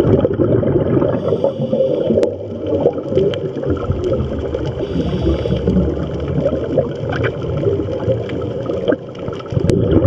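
Muffled underwater rumble and gurgling of scuba divers' exhaled bubbles, heard from an underwater camera. A couple of sharp clicks come about two seconds in and near the end.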